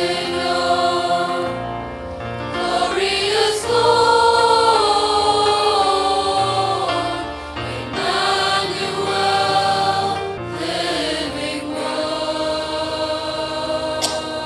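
A church choir singing a hymn with accompaniment, held notes changing every second or two over a low bass line.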